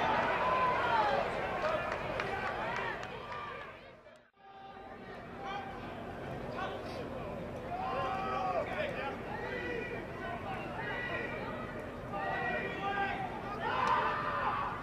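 Players' voices calling out on a rugby pitch, with no clear words, over open-air field noise. About four seconds in, the sound drops out briefly at an edit between clips, then the calls resume around a scrum.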